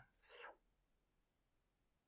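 A whispered voice trails off in the first half second, then near silence: faint room tone.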